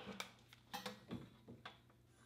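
Several faint, light clicks and handling noises as a flat iron and comb are worked through sections of hair.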